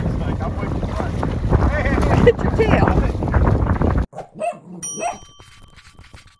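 Dogs splashing through shallow sea water, with wind rumbling on the microphone and brief voices. At about four seconds it cuts off, and a bright bell-like chime rings and fades.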